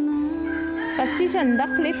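A rooster crowing over background music, where a long held sung note gives way to singing about halfway through.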